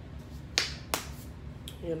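Two short, sharp clicks about half a second apart, the first trailing a brief hiss.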